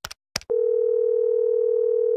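Two sharp clicks, like keystrokes, then from about half a second in a single steady mid-pitched electronic beep held for about two seconds, running on past the end.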